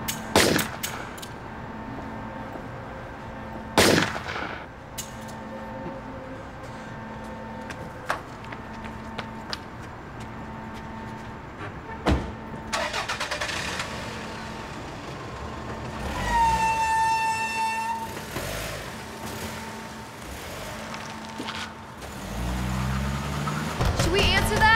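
Car sounds: two heavy door-like slams in the first few seconds and a sharp click about halfway. A car engine then starts. A loud horn-like tone sounds for about two seconds past the middle, and a low rising engine note comes near the end.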